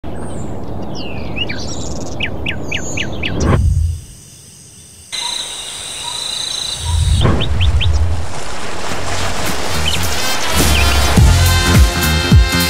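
Birds chirping over a steady noise bed. A swelling low rumble cuts off sharply about four seconds in, leaving a brief lull. More chirps follow, and music with a beat comes in near the end.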